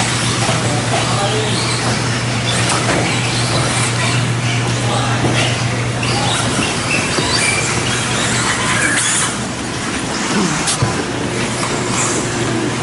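Electric 2WD modified RC buggies racing on an indoor clay track: motor whine and tyre scrub, with frequent short knocks and clatters, over a steady low hum.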